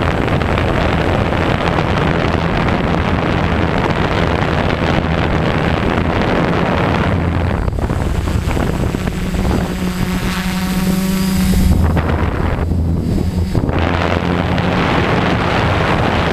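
Brushless motors and propellers of a 450-size multirotor humming steadily, heard from the onboard camera under heavy wind noise on the microphone. About ten seconds in, the wind noise drops away for a couple of seconds and the motor hum comes through clearly, rising a little in level before the wind noise returns.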